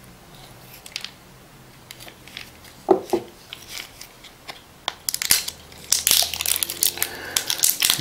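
Plastic tamper seal on a vitamin bottle's cap being torn and peeled off, a dense run of crinkling and tearing crackles starting about five seconds in.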